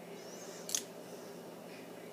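A single short, sharp click about three-quarters of a second in, over quiet room tone.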